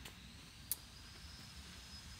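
Faint outdoor background hiss and low rumble with a thin, steady high-pitched tone, and a single small click about two-thirds of a second in.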